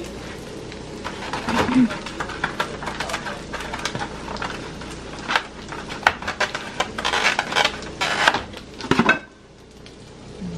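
Chicken strips and sausage sizzling steadily in a stainless steel skillet, with frequent clicks and knocks as a foam egg carton is handled and opened beside the pan. The sizzle drops away near the end.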